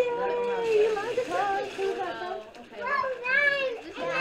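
Voices of children and adults talking over one another, fairly high-pitched, with no clear words.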